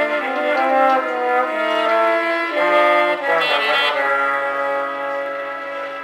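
A live horn section of trumpet, saxophone and trombone playing sustained notes in harmony, moving together from chord to chord and settling on a long held chord in the second half.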